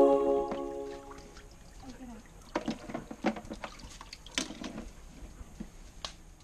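Background music stopping about a second in, then scattered splashes and sharp clicks as live mud crabs are handled in and over a plastic cooler half full of water. The loudest click comes a little after the middle.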